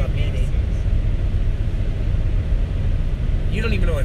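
Steady low road and engine rumble inside the cabin of a moving car. A voice comes in briefly near the end.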